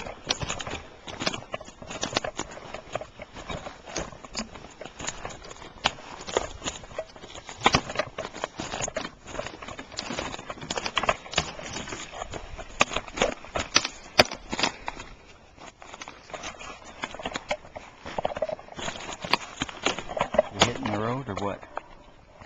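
Footsteps crunching irregularly on a forest floor of twigs, needles and patchy snow as people walk, with knocks from the handheld camera.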